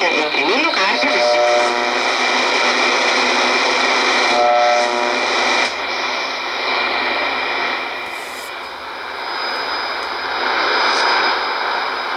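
Shortwave receiver audio in AM while tuning across the 25-metre band: static and hiss with steady whistling tones and brief snatches of station audio in the first half. From about six seconds in, an even rushing hiss, where the receiver sits on an open carrier with no modulation.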